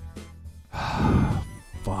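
A man's long, heavy sigh of frustration breathed into a close microphone, about a second in, over soft background music with steady held notes.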